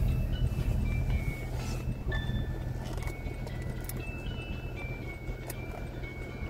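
A simple high-pitched electronic tune playing one pure note at a time in slow steps, from a child's tablet, over the steady low hum of a car idling.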